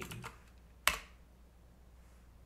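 A single sharp computer-keyboard keystroke about a second in, the Enter key running a command just pasted into a terminal, followed by quiet room tone.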